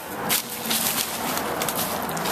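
Footsteps crunching on gravel and dry leaves, a few irregular crunches over a steady rushing background noise.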